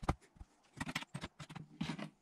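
Handling knocks and scrapes as a car alternator and a rag are moved and set down on a cardboard-covered workbench: one sharp knock at the start, then a quick run of light taps and rubs.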